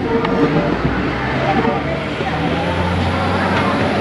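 Feve diesel train's engine running steadily, with indistinct voices over it.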